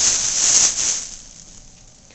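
A sudden close rustle lasting about a second and then fading, as something brushes past right in front of the camera's microphone.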